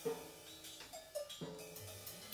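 Sparse free-improvised percussion: three separate struck hits, at the start, near one second and about a second and a half in, each with a short ringing tone.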